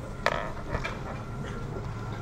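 Office chairs being moved and things handled on a table: one sharp knock about a quarter-second in, then a couple of lighter clicks, over a steady low room hum.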